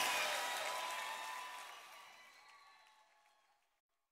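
The end of a live worship song fading out: congregation applause and a few held instrument notes die away to silence a little under halfway through.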